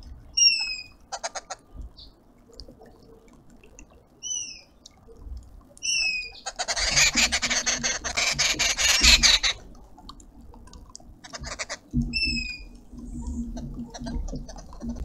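Arrow-marked babblers calling: a loud, harsh chattering chorus lasting about three seconds in the middle, with shorter rattling chatters before and after it. A few brief downward-sliding whistled notes are heard through it.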